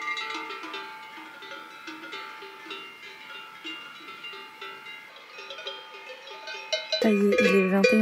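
Bells on grazing cattle clanking irregularly at many different pitches, louder and closer near the end.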